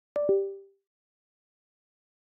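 Windows device-disconnect chime: two short descending tones, a higher one followed at once by a lower, louder one, fading out quickly. It marks a USB device being unplugged from the host as it is handed to the virtual machine.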